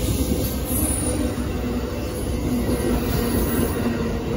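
Amtrak Superliner bi-level passenger cars rolling past close by, a steady loud rumble of wheels on rail with a faint steady tone running over it.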